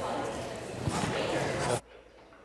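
Room noise of a large legislative chamber through an open microphone, with shuffling and a couple of light knocks a little under a second in. The sound cuts off abruptly near the end as the microphone or feed is switched.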